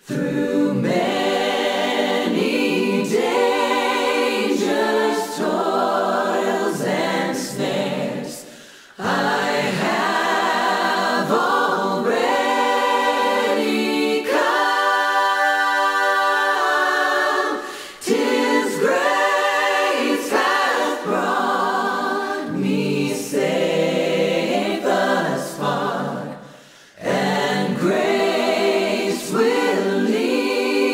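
A choir singing a cappella, in long phrases with brief pauses between them about every nine seconds.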